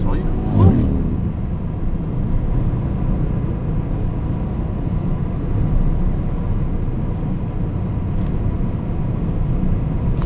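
Steady low rumble of engine and tyre noise inside a moving car's cabin.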